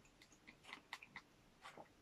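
Faint chewing of a soft kefir fritter (oladushka), with a few small mouth clicks.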